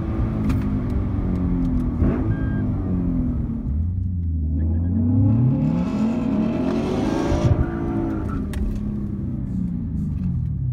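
Lexus IS F's 5.0-litre V8 with an aftermarket cat-back exhaust, heard from inside the cabin. It runs under way at first, then after a break it holds a steady low note, revs up over about two seconds and drops back down.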